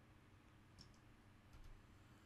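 Faint clicks of a computer mouse over near-silent room tone: one click a little under halfway through, then two or three close together near the end.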